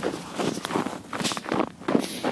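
Footsteps of a person running on snow, a steady rhythm of footfalls.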